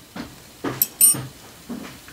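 Small brass machined parts clinking lightly as they are handled: a few short taps, one about a second in with a brief metallic ring.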